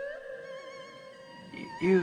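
Quiet film-score music holding a few long, steady notes, with a voice starting just before the end.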